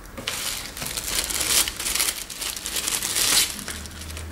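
Thin plastic packaging bag crinkling and rustling as a charger cable is pulled out of it and out of a cardboard box, an irregular crackle that stops shortly before the end.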